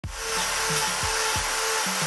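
Angle grinder with a trimming disc grinding a cow's claw: a steady motor whine over a grinding hiss.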